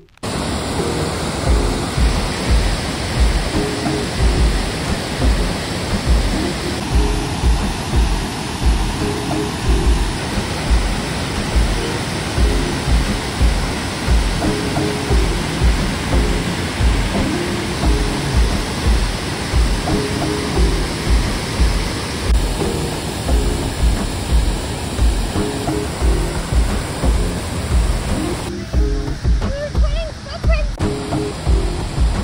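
Rushing water of a large waterfall, the glacier-fed Nugget Falls, as a steady dense hiss. Background music with a steady beat plays over it.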